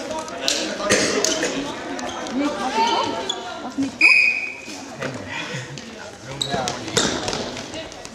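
Echoing sports-hall sound of a korfball game: players' voices calling across the court, a ball bouncing and knocking on the hall floor, and a brief high tone about four seconds in.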